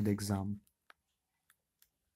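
A voice ends a phrase in the first half-second, then a pen tip ticks faintly on paper three times while writing.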